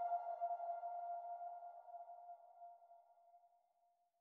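The final held note of an electronic dance track, one sustained tone with overtones fading out over about three and a half seconds.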